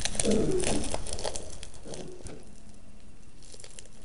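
Wrapper of a compressed dirt pellet crinkling and tearing as it is ripped and cut open. It is loudest in the first two seconds, then goes on as fainter rustling.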